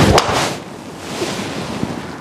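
A sharp crack just after the start as a Callaway Paradym Triple Diamond driver strikes the golf ball and the ball hits the simulator screen, over a rushing noise that fades within about half a second. The shot is struck well.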